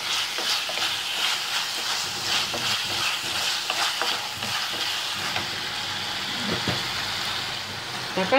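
Chopped tomato and onion sizzling in oil in a clay pot, stirred and scraped with a wooden spatula in quick repeated strokes over a steady frying hiss.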